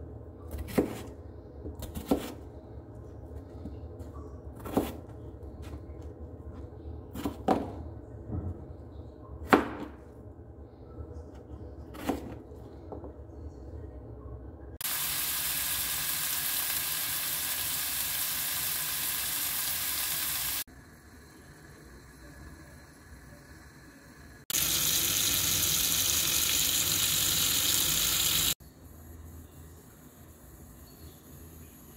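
Kitchen knife cutting potatoes and carrots on a plastic cutting board, a sharp chop every two to three seconds, six in all. From about halfway, oil sizzling steadily as diced vegetables fry in a pan, in two loud stretches with a quieter spell between them.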